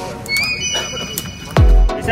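Background music laid over the video, with a loud deep bass note sliding down in pitch about one and a half seconds in.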